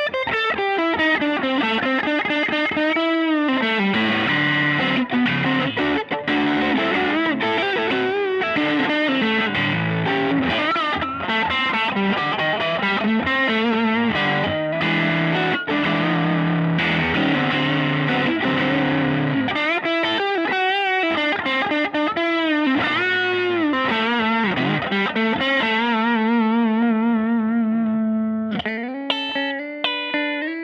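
Fender Custom Shop '50s Custom Thinline Telecaster played through an overdriven amp: continuous lead playing with bent notes and vibrato, easing off near the end into a few held, ringing notes.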